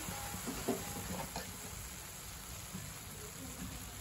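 Chicken and onions frying in a steel pan, a faint steady sizzle, with a few faint taps in the first second and a half.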